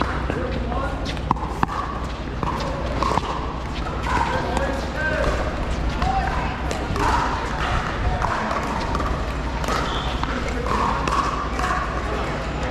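Scattered sharp pops of paddles hitting plastic pickleballs, mixed with indistinct voices of players and onlookers, over a steady low rumble.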